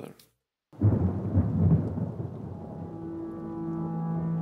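Sound drops out briefly, then a deep rumble comes in loudly and fades. About halfway through it gives way to a held chord of background music that swells slowly.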